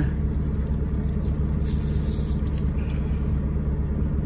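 Semi truck's diesel engine idling steadily, heard inside the cab. About two seconds in comes a brief rustle of the plastic sleeve being pulled off a GPS unit.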